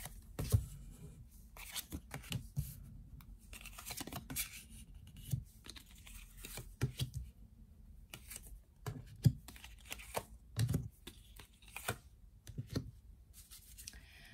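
Tarot cards being drawn from the deck and laid down on a board, one by one: irregular light taps, flicks and papery slides of card stock, with a few sharper snaps as cards are set down.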